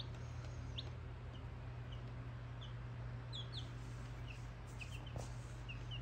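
Baby chicks peeping: a dozen or so short, high chirps scattered through, faint over a steady low hum.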